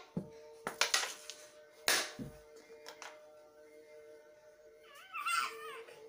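Carrom shot: the striker is flicked and strikes the wooden coins and board frame, giving a few sharp clicks over the first three seconds. A steady background tone runs throughout, and a short wavering vocal sound comes near the end.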